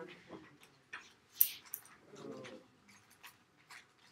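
A single sharp tap about one and a half seconds in, made to get the camera to focus on the board. Fainter clicks and a short low hum of a voice come a little later.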